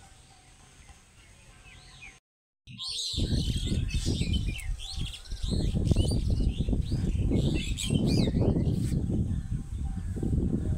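Many birds chirping, a flock calling over one another. The sound drops out for a moment about two seconds in, then comes back louder, with a heavy low rumble on the microphone under the chirping.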